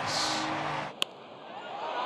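Ballpark crowd noise that cuts off about a second in. A single sharp crack of a wooden bat driving a pitch for a home run follows, with the crowd noise starting to rise again after it.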